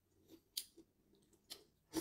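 Close-up eating sounds: about three short, sharp crackles and clicks as cooked shrimp is handled and bitten into.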